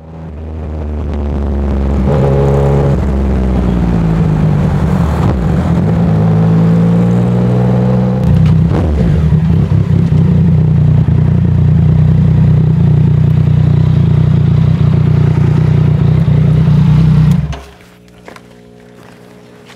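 Yamaha Tracer sport-touring motorcycle engine running at low revs, its pitch shifting a few times in the first eight seconds, then steady until it cuts off abruptly near the end.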